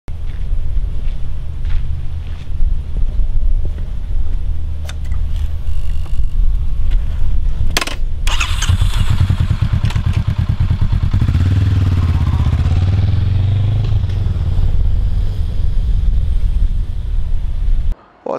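Motorcycle engine running with a deep rumble, a sharp click just before eight seconds in, then revved so its pitch rises and falls a few times before settling back to a steady run.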